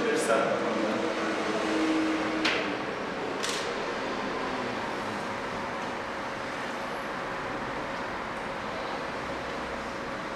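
Steady hiss and hum of the meeting room's background noise, with faint speech in the first few seconds.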